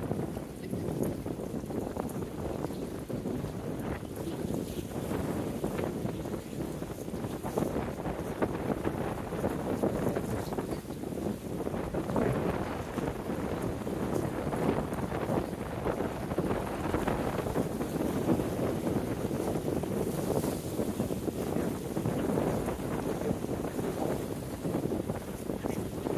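Wind buffeting the microphone in uneven gusts, over waves washing against the rocks along the pier.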